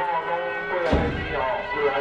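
Temple procession music: sustained, reedy wind tones and ringing over crowd voices, with one loud percussion strike about a second in.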